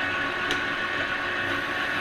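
Victor lathe running steadily at speed, a constant hum with a higher whine over it. There is a single sharp click about half a second in.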